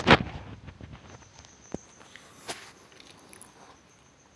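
Handling noises as a glass triangular prism and pencil are positioned on paper taped to a board: one sharp knock at the start, then a few light taps and scrapes.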